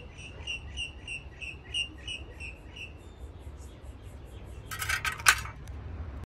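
A small bird chirping in a steady series, about three short chirps a second, fading after about three seconds. Near the end a brief metallic clatter as a hand handles the metal magpie wall art.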